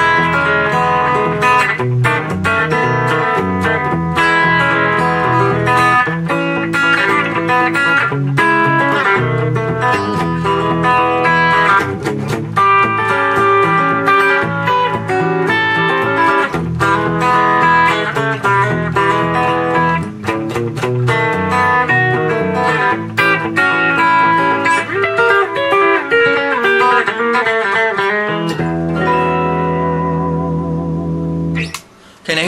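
Paul Reed Smith Experience Edition electric guitar played with a thumb pick in chicken-picking style: quick runs of sharply picked single notes and short chords, settling into a held chord near the end.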